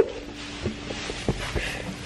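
Handling noise from a camera being picked up and moved about: a sharp knock at the start, then a few soft bumps and rustling, over a faint steady hum.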